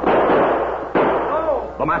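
Radio-drama sound effect of revolver gunfire: two shots about a second apart, each with a long fading ring.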